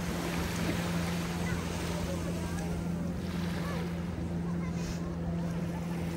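Small waves washing onto a sandy shore, with brighter washes about three and five seconds in, over a steady low drone of a boat engine running offshore. Faint voices of people on the beach.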